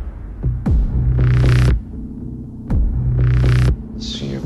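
Trailer sound design: two deep, droning low hits of about a second each, each opening with a quick falling sweep and topped with a hissing layer, and each cutting off sharply.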